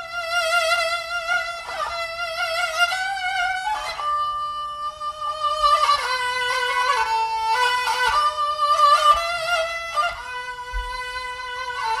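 Solo bowed fiddle music: a slow melody of long held notes with vibrato, moving to a new pitch every second or two.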